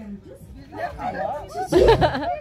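Voices of a group of people talking among themselves, with a loud burst of sound near the end.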